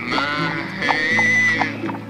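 Honky-tonk instrumental with a steady beat and a horse whinnying over it, a high call that rises and falls with a wavering tone.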